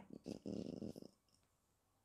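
A man's short, faint, throaty breath sound for about a second, then silence.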